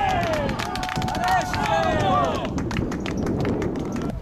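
Several men shouting and cheering on an open football pitch just after a goal. Their yells rise and fall and die away after about two and a half seconds, over a scatter of sharp knocks.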